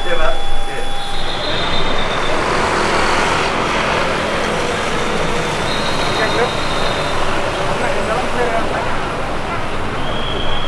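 Steady noise of motor vehicles running close by, with scattered voices of people talking.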